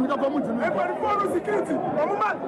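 Speech only: people talking, with more than one voice at once.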